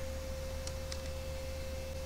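A steady, faint pure tone with a low electrical hum beneath it, the background of a desktop recording. Two faint computer keyboard key clicks come about two-thirds of a second and one second in.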